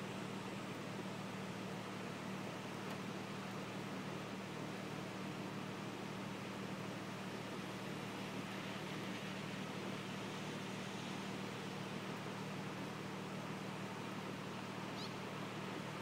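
Steady rushing noise of rain and floodwater running over the road, with a low steady hum underneath and a brief high squeak near the end.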